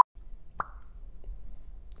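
A steady 1 kHz test-tone bleep cuts off sharply at the very start, then low room noise with a single short pop about half a second in.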